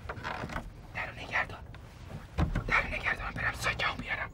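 A run of irregular creaks and small knocks, loudest in the second half, with a dull thump about two and a half seconds in, from people moving and handling something at a wooden doorway.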